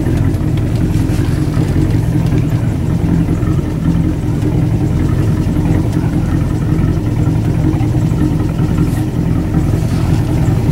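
Motorboat engine running steadily: a loud, even low drone with a few held tones that does not change in pitch.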